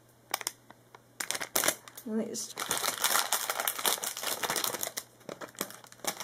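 Foil blind-bag packet crinkling and rustling in the hands as it is handled and opened, starting about a second in and thickening into continuous crinkling through the middle.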